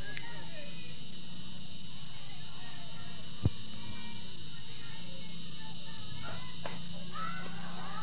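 A single short crack of a softball bat hitting the ball about three and a half seconds in, a pop-up, over a steady background of field noise with faint distant voices.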